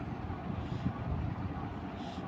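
Steady background noise between spoken lines: a low rumble with faint hiss, no distinct event standing out.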